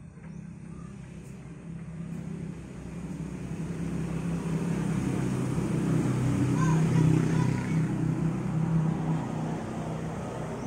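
A motor vehicle's engine nearby, growing steadily louder and loudest about seven seconds in.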